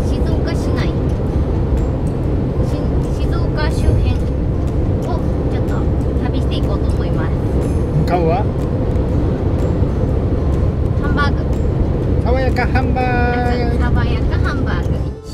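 Inside the cabin of a 6th-generation Toyota HiAce diesel van cruising on a highway: a steady low rumble of road and engine noise.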